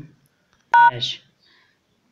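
A single short dial-pad key tone from an LG Android phone's keypad about three-quarters of a second in: the hash key, pressed as the last key of the call-waiting code *43#.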